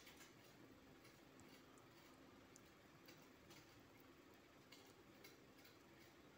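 Near silence: room tone with a few faint, irregular small clicks.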